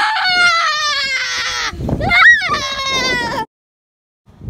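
A child screaming in two long, high-pitched wails without words, the first sliding down in pitch and the second rising then falling. The sound cuts off abruptly about three and a half seconds in.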